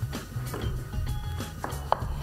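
Background music with a steady bass beat, with a few knife strokes through aubergine onto a wooden cutting board.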